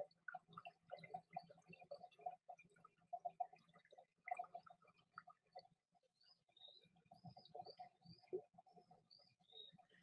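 Faint birds calling in a wooded garden, with a series of short, high chirps in the second half. There is a single click right at the start.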